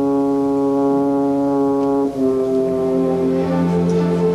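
Opera orchestra holding a sustained chord, brass to the fore, then moving to a new chord about two seconds in, with a lower note entering soon after.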